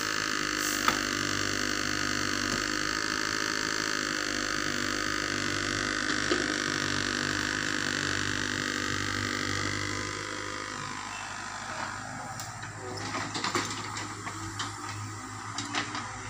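Sumitomo SH75 mini excavator running as it digs, its engine and hydraulics giving a steady mechanical hum. About ten seconds in the sound drops lower, with a few scattered knocks.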